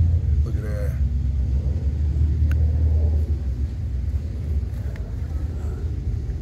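Steady low rumble, with a brief voice in the background about a second in.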